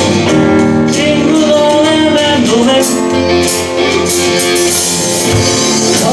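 Live band music: acoustic guitars playing with a man singing the lead, and drum cymbals coming in about halfway through.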